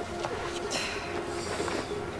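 A dove cooing softly in the background of the show's audio. Its low, steady note breaks off and resumes, with a brief soft hiss a little under a second in.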